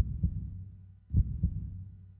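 Heartbeat sound effect: two pairs of low double thumps, lub-dub, about a second apart, over a low hum.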